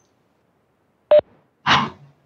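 Near silence on a video-call line, broken about a second in by one very short blip with a clear tone, and near the end by a brief hiss.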